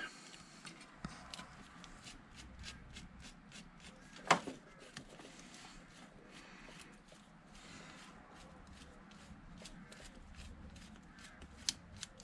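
Screwdriver turning the screw of a carburettor's front mounting clamp on a scooter to loosen it: a steady run of faint clicks, about three or four a second, with one louder knock about four seconds in.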